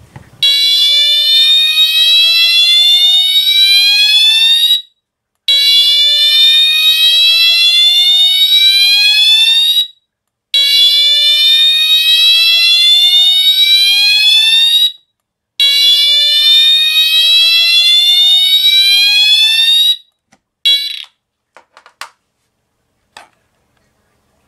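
Siemens UMMT-MCS multi-tone fire alarm horn strobe sounding its slow whoop tone: four long rising sweeps, each about four and a half seconds, with short gaps between them. About twenty seconds in, the alarm starts another sweep but is cut off almost at once, followed by a few faint clicks.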